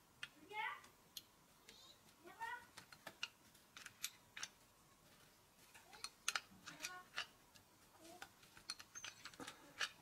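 Faint scattered clicks and metal ticks from a hand riveter being handled and loaded with a rivet, with two short rising squeaks in the first three seconds.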